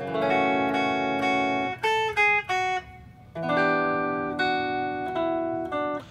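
Ibanez AZES40 electric guitar, clean tone, played chord-melody style: a ringing chord, then a few quick single melody notes, a short pause, and a second chord held with its top notes moving a few times.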